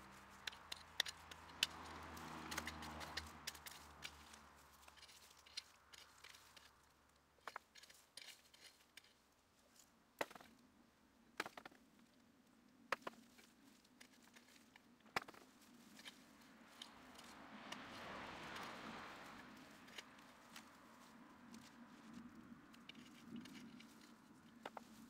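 Hands and a small hand hoe working through dry, crumbly soil to dig out potatoes: faint scattered crackles, scrapes and small clicks, at irregular intervals, as earth and clods are raked and broken up.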